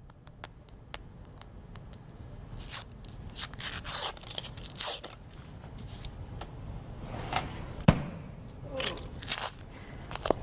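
Paper wrapper tearing and scraping as it is peeled off a cardboard tube of refrigerated biscuits, then one sharp pop about eight seconds in as the pressurized tube bursts open.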